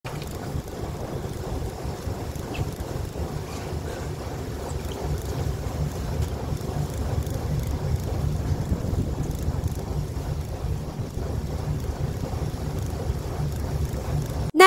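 Wind buffeting the microphone on a small fishing boat at sea: a steady, low rumble.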